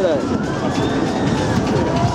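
Steady rushing noise as a free-fall tower ride's gondola climbs, with a rider's voice trailing off right at the start.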